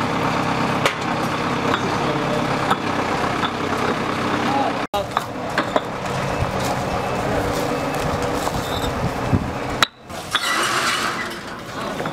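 Paving work: an engine running steadily under scattered clicks and knocks of concrete interlock paving blocks being set and stacked, with workers' voices in the background.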